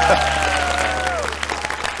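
Studio audience clapping in response to a call to make some noise, the applause tapering off toward the end. A held musical note slides down and fades out about a second in.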